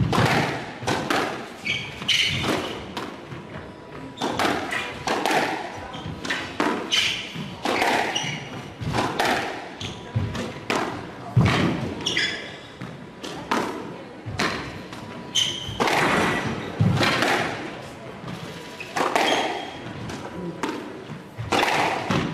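A squash rally: rackets striking the ball and the ball hitting the walls in a quick, irregular run of sharp knocks, about one or two a second, with short high squeaks of shoes on the wooden court floor between them.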